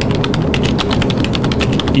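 Rapid typing on a laptop keyboard: a quick, steady run of key clicks, many per second.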